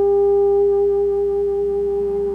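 A euphonium holding one long, steady high note.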